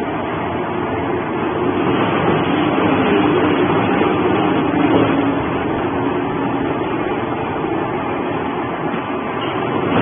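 Industrial shredder running as it tears up cardboard boxes: a steady, loud mechanical noise that grows a little louder for a few seconds in the middle.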